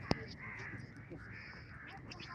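Faint, distant voices and calls in open air, with a short sharp click right at the start.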